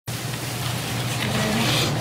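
Courtroom room noise: a steady hiss with a low hum underneath.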